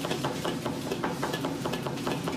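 Cleavers chopping on cutting boards: rapid, uneven knocks, several a second, over a steady low hum of kitchen burners and extractor hoods.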